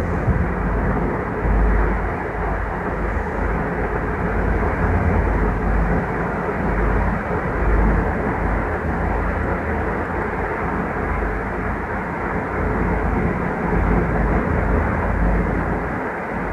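Steady low rumbling background noise that wavers in level, with no distinct clicks or tones.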